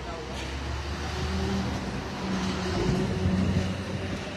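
A motor vehicle engine running at low revs, a steady low hum that grows somewhat louder through the middle.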